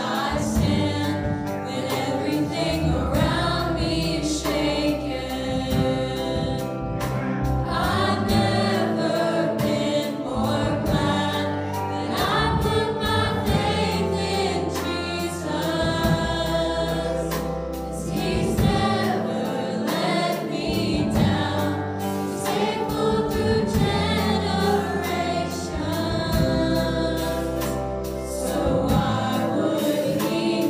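Teen choir singing a contemporary worship song in parts, with lead voices on microphones, over full accompaniment with a steady bass line and drums.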